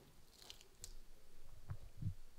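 Quiet room tone with a few faint short clicks, and soft low knocks near the end.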